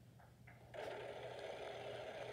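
The game-show prize wheel is spun and its pegs click rapidly and steadily against the pointer, starting about three-quarters of a second in. It is heard through a phone's speaker.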